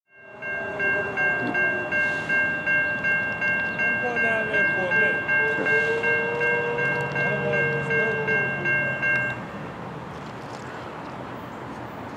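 A railroad grade-crossing warning bell ringing in quick, even strokes, about three a second, warning of an approaching train. It stops suddenly about nine seconds in, leaving a steady background hiss.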